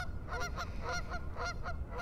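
Geese honking repeatedly, many short calls following one another throughout.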